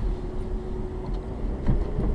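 Car interior noise while driving: a steady low engine and road rumble, with a faint steady hum that fades out near the end.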